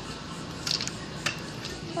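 Handling noise of a handheld tablet being moved: a few light clicks and rustles over a steady low background noise.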